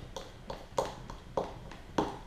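Metal fork tapping and scraping against a plastic bowl while chopping soft, sugar-macerated orange segments: about five irregular clicks.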